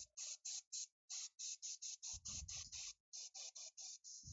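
Airbrush spraying black primer onto a miniature in short hissing bursts, about four or five a second, with a low bump about halfway through.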